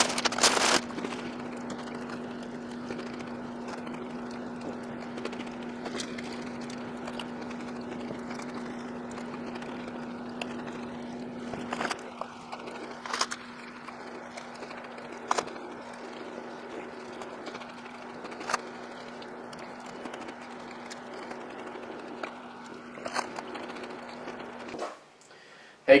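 A steady low room hum, broken by a handful of sharp, isolated crinkles and clicks from a plastic cookie package tray as Oreo cookies are taken out and eaten.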